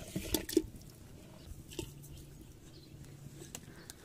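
Garlic cloves and onion pieces dropping from a plastic bowl into a clay pot of hot water: a few small splashes and light taps in the first half-second, then only faint background.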